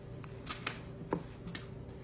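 A few light clicks and taps as hands press cinnamon-roll slices down into a glass baking dish, with a faint steady hum underneath.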